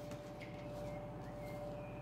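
Quiet room tone: a faint steady hum with a thin, constant tone held through it, and no distinct handling sounds.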